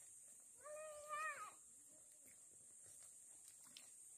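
A dog whining: one short, high-pitched cry that rises at the end, about a second in.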